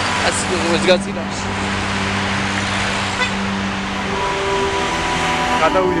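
Steady road traffic noise from cars on a busy multi-lane city road, with a long held tone running from the start until about four seconds in.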